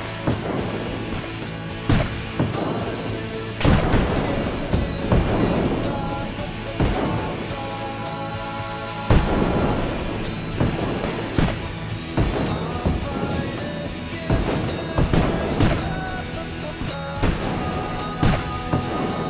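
Background music of sustained held notes with heavy percussive hits at irregular intervals, the loudest about nine seconds in.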